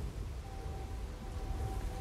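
Low rumbling outdoor background noise. A faint, thin steady tone comes in about half a second in.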